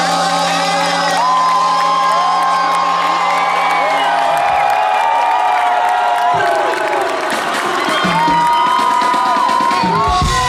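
Live band playing with a crowd cheering and whooping over the music; a steady low note in the band drops out about four seconds in.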